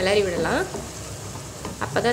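Chopped tomatoes and onions sizzling in hot oil in a nonstick frying pan while a wooden spatula stirs and scrapes them. A voice speaks briefly at the start, over the frying.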